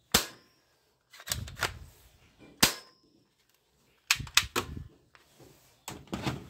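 Sharp plastic snaps and clacks of a toy gun's action being worked by hand: a loud snap just after the start and another about two and a half seconds in, with quicker clusters of clicks and dull knocks between them.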